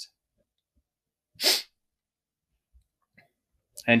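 Near silence, broken about one and a half seconds in by a single short intake of breath, with two faint ticks shortly before speech resumes at the end.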